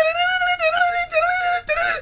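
A man's voice imitating a violin line in high falsetto: one long, gently wavering held note, then a shorter note near the end.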